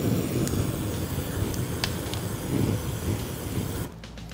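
Rushing, hissing flame of 180-proof moonshine sprayed through a torch and burning over a sugar cube in a glass, to caramelize the sugar. It starts suddenly, holds steady for nearly four seconds and cuts off.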